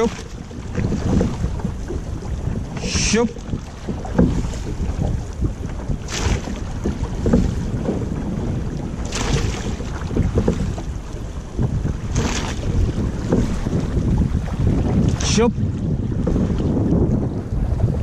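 A llaüt being rowed at sea: wind buffets the microphone over the steady rush of water along the hull. A short shouted 'shop' comes about every three seconds, calling the crew's stroke.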